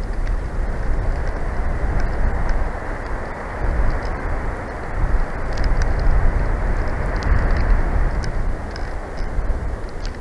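Wind rumbling on an outdoor camera microphone: a steady, deep noise that swells in gusts through the middle.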